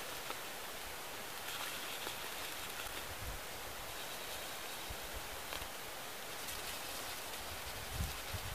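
Quiet outdoor ambience: a steady hiss with faint rustling and light knocks as a woven corn sack is handled and dotted with a magic marker.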